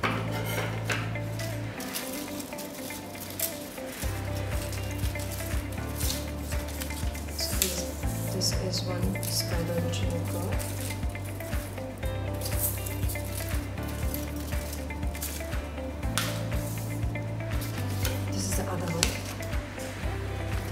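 Paper rustling and crinkling in crackly bursts as hands handle cut paper spirals, over background music with a low bass line that changes every couple of seconds.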